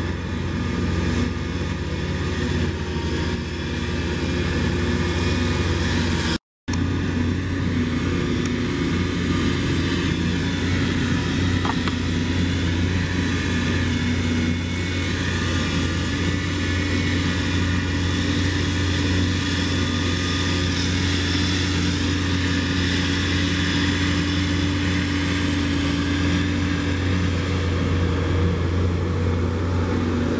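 Claas Jaguar 960 forage harvester chopping ryegrass, with Fendt tractors hauling trailers beside it: a steady, loud engine and machinery drone with a deep hum. The sound cuts out for a moment about six seconds in.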